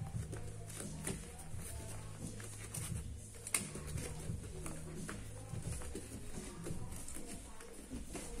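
Grapplers hand-fighting on a mat: bare feet shuffling and hands slapping and gripping in short scattered bursts, with one sharp slap about three and a half seconds in.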